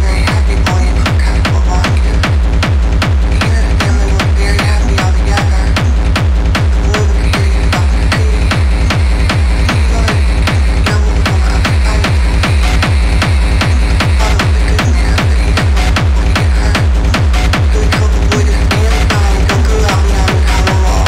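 Dark techno playing in a DJ mix: a steady, evenly repeating kick drum beat over a heavy bass, with regular hi-hat ticks on top, loud and unbroken.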